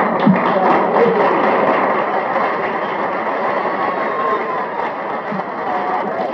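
Live audience applauding, with voices calling out over the clapping, the noise easing off slightly toward the end.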